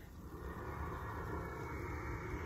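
Steady low rumbling outdoor background noise, without any distinct events.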